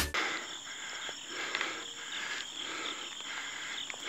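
Insects chirping in a steady chorus: a high, even buzz that pulses softly about twice a second.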